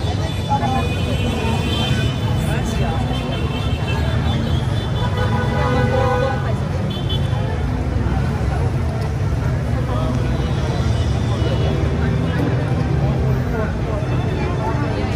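Busy city street ambience: a steady rumble of passing traffic mixed with voices of people nearby.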